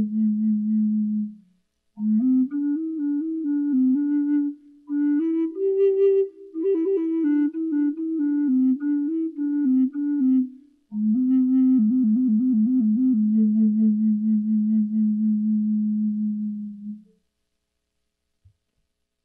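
Low-pitched wooden Native American flute playing a slow solo melody in four phrases with short breaks between them, a quick warble in the last phrase, and a long held low note near the end that then stops.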